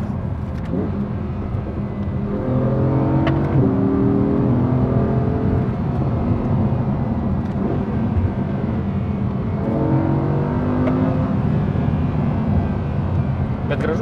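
Audi R8 V10 Plus's rear-mounted 5.2-litre V10 heard from inside the cabin while driving, with road noise. Its pitch climbs in steps about three seconds in and again around ten seconds as the car accelerates.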